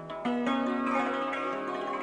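Santoor, the hammered dulcimer struck with light wooden mallets, playing a dhun in raag Mishra Mand: quick struck notes that ring on and overlap, louder from about a quarter second in.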